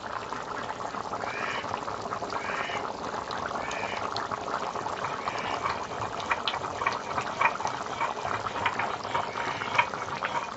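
Chicken curry simmering in a steel kadai over a fire: a steady bubbling with frequent small pops and spits.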